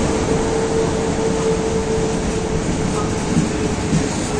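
Passenger coaches of a locomotive-hauled train rolling slowly past along the platform: a steady rumble with a constant hum, and a couple of short knocks near the end.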